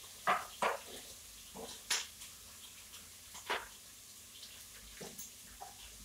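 A few short, separate clinks and knocks of a cooking utensil against a frying pan, the sharpest about two seconds in.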